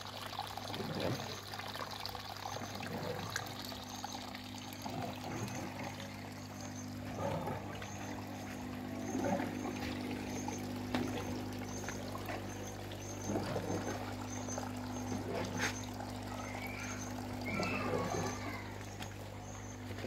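Pumped fish-pond water pouring and trickling into an aquaponics grow bed, over a steady low hum.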